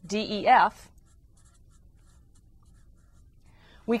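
A felt-tip marker writing several letters on a page, faint, after a short spoken phrase at the start.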